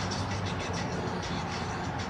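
Cars passing on the street nearby, a steady wash of tyre and engine noise, with music playing underneath.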